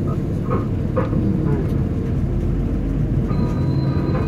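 Steady low road rumble heard inside the cabin of a moving vehicle, with no breaks or changes in pace.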